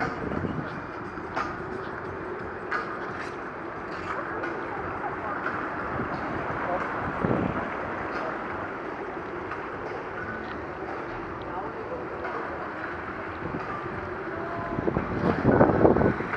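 Open-air deck ambience: steady wind over the microphone with background chatter of people nearby, and a louder voice near the end.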